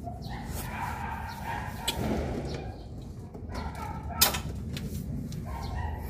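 Work noise on a split air conditioner's outdoor unit as its refrigerant lines are handled, with a sharp metallic click a little after four seconds in.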